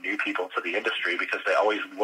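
Speech only: a man talking continuously, with a narrow, radio- or phone-like quality.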